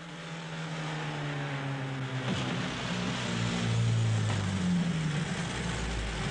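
Rally sports car engine accelerating hard, its pitch climbing and then dropping at gear changes twice, about two seconds in and again just after four seconds.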